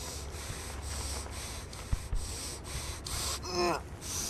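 A man breathing hard in quick, ragged breaths, about two to three a second, with a short falling groan about three and a half seconds in: a wounded soldier in pain while his wound is treated.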